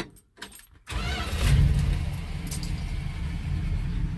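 1986 Dodge pickup's engine, after eight years sitting, starting on the key about a second in. It catches at once, briefly runs up, then settles into a steady run.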